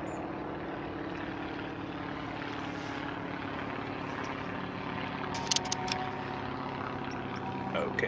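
A steady low engine drone, distant, holding an even pitch, with a few sharp clicks about five and a half seconds in.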